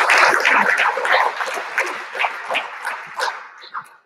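A congregation applauding. The clapping is loud at first, then thins to scattered claps and dies away toward the end.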